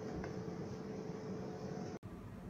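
Low steady background hiss and hum with one faint click about a quarter second in.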